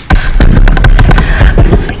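Handling noise from a microphone being pulled closer to the speaker: a run of low thuds and scattered clicks as the mic and its stand are moved.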